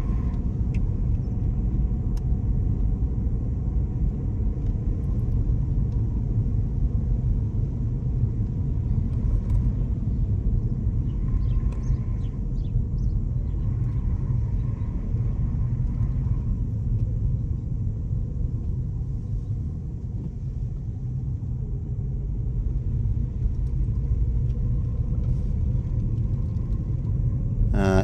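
A car driving slowly along a narrow lane, heard from inside the cabin: a steady low rumble of engine and tyres on the road.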